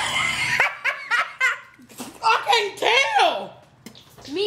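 People laughing in short, repeated bursts, with a loud laugh near the start and another round about two to three seconds in.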